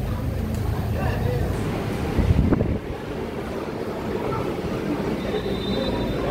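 Busy airport terminal hall ambience: background voices over a steady low rumble. A brief loud noise comes about two and a half seconds in, after which the rumble drops and the hall sounds quieter.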